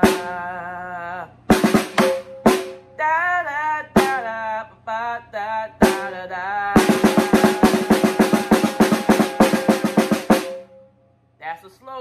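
Snare drum struck with sticks at slow practice speed: scattered single strokes over the first six seconds, then a fast run of strokes from about seven to ten seconds in, with the player's voice singing the rhythm along. The drumming stops about a second and a half before the end.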